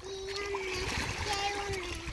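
A voice making three long, drawn-out sounds at a steady pitch, over small waves lapping and splashing in shallow seawater.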